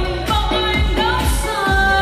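A woman singing a pop song into a microphone over backing music with a steady, fast beat of about four drum strokes a second.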